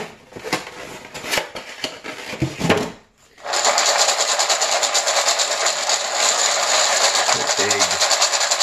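Dry dog kibble rattling in a stainless steel bowl, with a few scattered clicks and knocks at first as the bowl is handled. About three and a half seconds in, the bowl is shaken to mix in a raw egg and the kibble sets up a fast, dense, continuous rattle.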